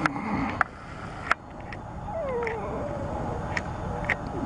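A cat meowing, one drawn-out call that falls in pitch about two seconds in, with a few sharp clicks scattered through.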